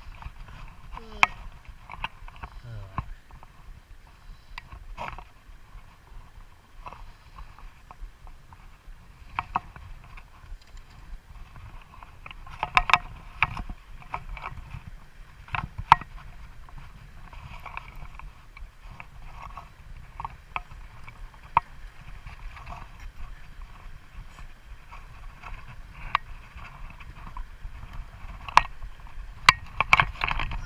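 Water lapping and slapping close to the microphone, with irregular sharp clicks and splashes, the loudest about halfway through, over a low steady rumble.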